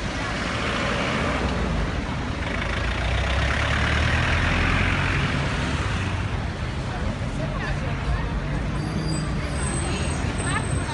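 A city bus's diesel engine running as the bus pulls in and turns, with passing car traffic; it swells to its loudest around the middle. Crowd voices are mixed in.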